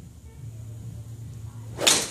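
Golf iron swung at a ball off a hitting mat: one short, quick whoosh ending in the strike, near the end.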